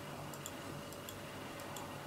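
Faint, sharp clicks, often in close pairs and a few a second at uneven spacing, over a steady low room hum: a computer mouse or key being clicked to flip through presentation slides.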